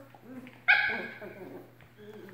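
Two cocker spaniels play-fighting: one sharp, high-pitched bark about two-thirds of a second in, fading over half a second, amid lower growling.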